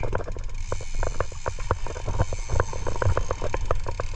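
Big-game fishing reel's drag clicker ticking rapidly as a hooked marlin pulls line off against the drag, about five or six ticks a second, over a low steady rumble.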